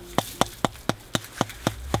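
Salt being shaken out of a plastic cup into a plastic barrel: a steady run of sharp taps, about four a second.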